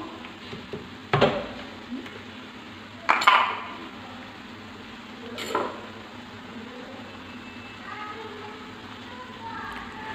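A wooden spoon stirring a chicken filling in a nonstick frying pan over a faint sizzle. The spoon knocks sharply against the pan three times: about a second in, around three seconds, and at five and a half seconds.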